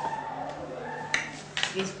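Sharp clicks: one about a second in, then a quick few near the end, over faint voices.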